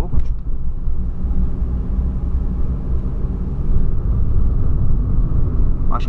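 Steady low rumble of road and engine noise heard inside the cabin of a Volkswagen Polo Sedan driving at an even pace.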